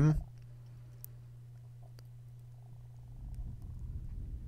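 A few faint, sparse computer keyboard keystrokes over a steady low electrical hum.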